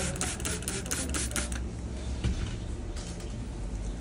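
Quick run of light clicks and clinks from small metal podiatry instruments being handled, thickest in the first second and a half, with a few more near three seconds.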